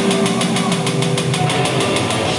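Live synth-rock band playing an instrumental: a fast, even pulse of about ten strokes a second runs under held synth and guitar notes.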